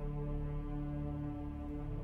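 Epic cinematic orchestral music: a deep, sustained low chord held steady with no break.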